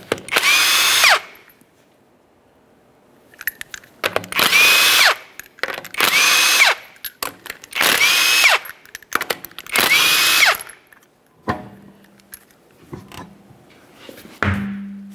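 Cordless impact wrench spinning off five lug nuts, one short run of about a second for each, each ending in a whine that falls in pitch as the tool winds down. Faint clicks and knocks follow near the end.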